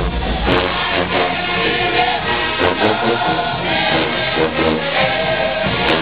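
College marching band playing a tune, with many horns sounding full, sustained chords.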